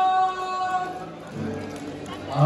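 A singer's long held note with a rich, steady tone, fading out about a second in, followed by fainter music.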